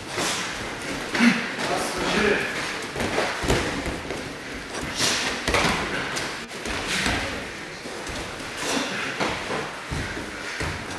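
Full-contact karate sparring: irregular thuds of punches and kicks landing on the opponent's body and gi, with feet on the tatami and short shouts. The sharpest blow comes about a second in.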